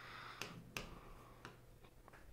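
Faint, sharp clicks of a pen tip tapping on an interactive board's screen while writing, about four in two seconds, with a light scratch of a pen stroke near the start.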